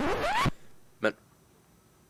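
A short rasping sound, about half a second long, that sweeps upward in pitch and cuts off abruptly.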